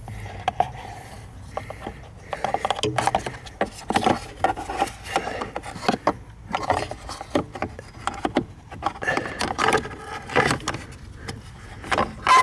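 Hands working up under a car's dashboard: irregular rubbing, scraping and clicking against plastic trim, the wiring loom and a metal bracket, busiest from about two seconds in.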